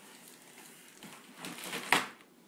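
Clear plastic bag around an RC monster truck crinkling and rustling as the truck is pulled out of its cardboard box. It is faint at first, grows louder over the second half and peaks in a sharp crackle near the end.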